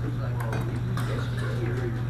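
Light, scattered clinks of laboratory glassware over a steady low hum.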